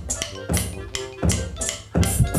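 Electronic drum kit played at a slow, steady beat by a first-time player, with a hit about every three-quarters of a second heard through the kit's sound module.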